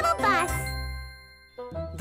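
Cheerful cartoon voices at the start, then a bright tinkling jingle effect that fades away over about a second. Music starts up again near the end.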